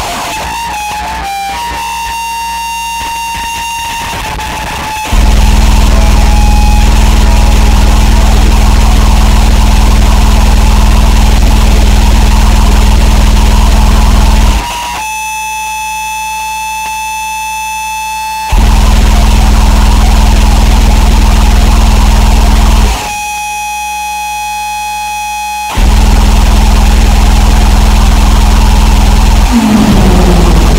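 Harsh noise music: a very loud, dense wall of distorted noise. Three times it drops out to a quieter stretch of sustained high-pitched whining tones: for the first five seconds, again about 15 seconds in, and again about 23 seconds in.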